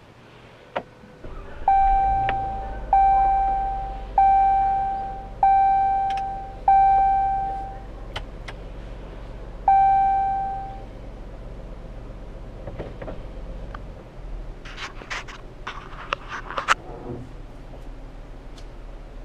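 Jeep Cherokee Trailhawk started by push button and idling, heard from inside the cabin. Its dashboard warning chime rings five times, about one every second and a quarter, each note dying away slowly, then rings once more a few seconds later. Near the end comes a quick run of clicks and knocks.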